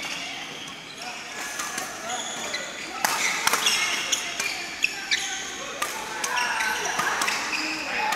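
Badminton rackets striking shuttlecocks in a fast multi-shuttle drill: several sharp hits from about three seconds in, with court shoes squeaking on the floor and voices echoing in a large sports hall.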